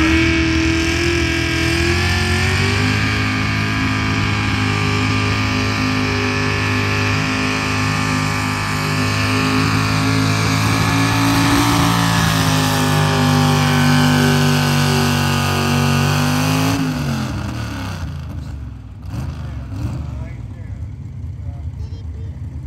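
Pickup truck engine held at high revs under heavy load while pulling a weight-transfer sled. The revs climb over the first couple of seconds, hold steady, then drop about seventeen seconds in as the pull ends and the engine winds down.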